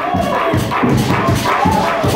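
Live church praise-break music from the band in the hall, with a fast, steady beat.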